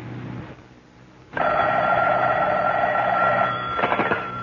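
Telephone bell ringing once, a single buzzing ring of about two and a half seconds that starts suddenly about a second and a half in, as an old radio-drama sound effect.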